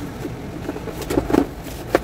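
Cardboard laptop box being handled and its flaps opened: a few short scrapes and taps about a second in, then one sharp click near the end.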